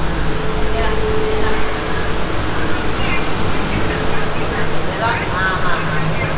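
Steady low rumble and hum inside a KTM ETS electric train carriage, with a faint steady tone in it. Faint voices come in near the end.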